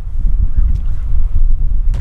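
Wind buffeting the microphone: a loud, uneven low rumble that rises and falls with the gusts.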